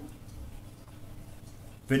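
Quiet room tone with a faint, steady low hum during a pause in a man's talk. His speech starts again at the very end.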